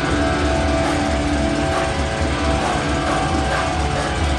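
Live death metal band playing loud: amplified distorted electric guitars and bass holding sustained notes over a heavy low end.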